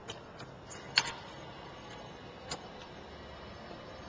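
A few light, sharp clicks, the loudest about a second in and another about two and a half seconds in, over faint steady room tone.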